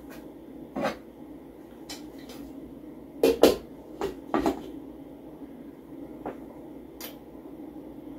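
Metal lid being fetched and set onto a stainless steel stockpot: a few short clanks and knocks, the loudest about three and a half seconds in, over a steady low hum.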